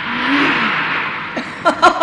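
Cartoon sound effect: a rushing whoosh swells up and holds, with a short low sliding tone about half a second in and a high warbling chatter starting near the end.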